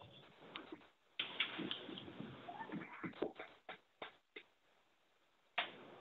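Faint, indistinct background sounds over a telephone conference line, with a few sharp clicks and a brief rising tone in the middle, then the line goes nearly silent near the end.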